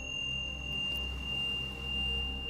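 Meditation background music: a low, gently swelling drone with a steady, high, pure ringing tone held over it, and a fainter higher tone that fades out about a second in.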